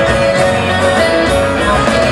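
Live band music in an instrumental passage, with acoustic guitar strumming along under steady held notes.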